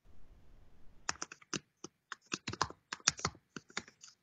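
A quick, irregular run of light, sharp clicks, starting about a second in and continuing to the end.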